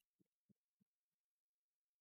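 Near silence: a pause between phrases, with next to nothing audible.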